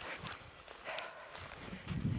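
Footsteps and rustling through low brush with handling knocks of a hand-held camera: scattered soft clicks over a faint hiss, with a low rumble building near the end.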